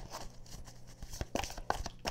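Tarot cards being handled and shuffled by hand: light flicks and rustles of card stock, coming more often in the second second.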